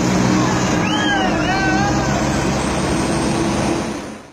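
Engine and road noise inside the cab of a moving truck, a steady loud drone. From about a second in, a voice calls out over it for about a second.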